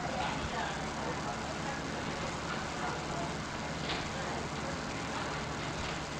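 Steady hiss and low hum of an old courtroom recording in a pause between speakers, with faint, distant voice fragments under the noise.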